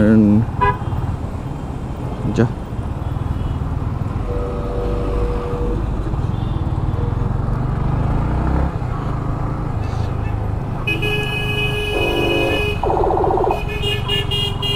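Yamaha MT-15's single-cylinder engine running at low speed in heavy traffic, a steady low rumble. Vehicle horns toot around it: one steady note a few seconds in, and a longer high-pitched horn followed by a buzzier one near the end.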